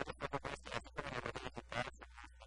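Speech: a man talking quickly in Spanish over a low, steady hum.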